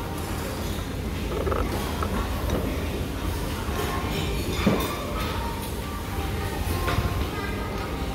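Restaurant background: the murmur of other diners' voices over a low steady hum, with a sharp knock about halfway through and a fainter one near the end.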